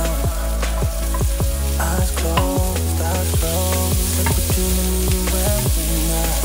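Sliced sausage and onion sizzling in melted butter in a nonstick frying pan as they are stirred. Background music with a steady beat plays over the sizzle.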